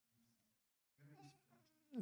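Near silence: room tone in a pause between spoken sentences, with a faint low murmur about a second in.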